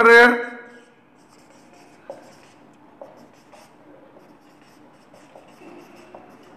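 Marker pen writing on a whiteboard: faint, separate short strokes as letters are drawn.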